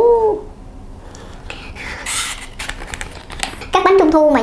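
A short cry that rises then falls, right at the start. Then, around the middle, about a second of dry crackling and rustling as a large baked mooncake is broken apart and handled.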